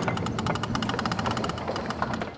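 A rapid, steady mechanical clatter, like a small machine running, with a low hum beneath the fast even clicks.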